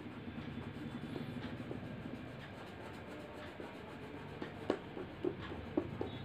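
A red crayon scribbling rapidly back and forth on paper while colouring in, a quick rhythmic scratching, with three sharper clicks near the end.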